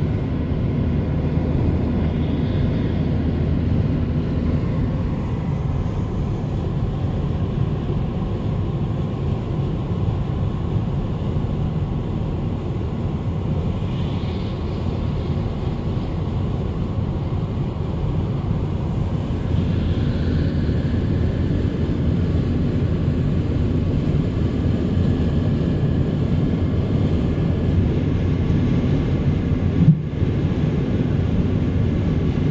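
Steady road noise inside a car cruising at motorway speed: a constant low rumble of tyres, engine and wind heard from the cabin.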